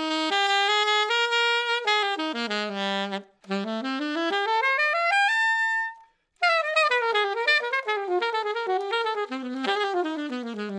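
Alto saxophone played through a blue SYOS Smoky mouthpiece in jazz phrases. About three seconds in there is a short break, then a run climbing to a held high note. After another short break a fast, busy line follows.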